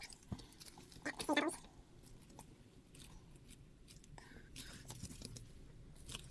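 Quiet handling noises of gloved hands squeezing and rubbing a soft clear silicone mold packed with resin pieces: small clicks and rustles, with a brief pitched sound a little over a second in.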